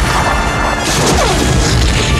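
Loud, dense movie sound-effects mix of crashing noise, with falling wailing glides about a second in, over orchestral film score.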